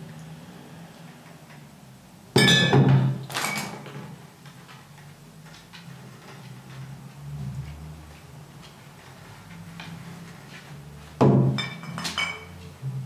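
Upright double bass played sparsely as the song winds down: low held notes, broken by loud, sharp percussive knocks that ring briefly, two about a second apart a couple of seconds in and one more near the end.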